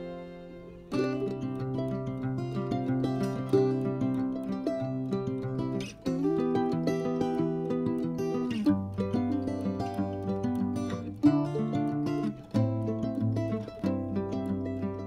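Instrumental background music played on plucked strings, its chords changing every few seconds.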